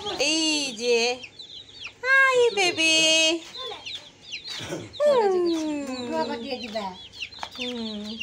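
Baby chicks peeping constantly in short high chirps. Three louder, drawn-out sounds rise above them, the last falling steadily in pitch.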